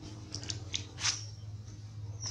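A few short, high-pitched animal chirps and clicks between about a third of a second and a second in, the last one loudest with a brief falling tail, over a steady low hum.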